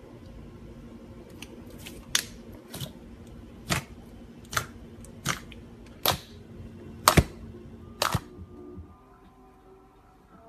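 Clear glittery slime being squeezed and pressed in a plastic tub, giving a series of about eight sharp clicking pops less than a second apart, over a steady low hum.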